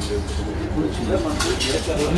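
Indistinct voices talking low, with a few light clinks of a metal spoon on a plate about one and a half seconds in.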